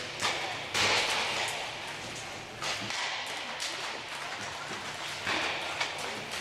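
Inline hockey warm-up shooting: a few sharp knocks of pucks struck by sticks and hitting the goalie's pads and the boards, the loudest a little under a second in, over a steady background of rink noise.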